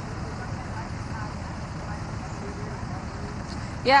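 Outdoor roadside background noise: a steady low rumble of traffic and vehicle engines, with faint distant voices.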